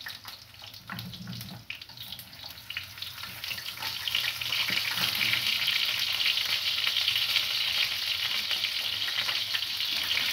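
Chicken feet, fish and beef sizzling as they fry together in a pan. The sizzle grows louder about four seconds in and then holds steady. A few light clicks of metal utensils on the pan come in the first seconds.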